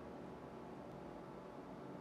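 Quiet room tone: a faint, steady low hum with no distinct event.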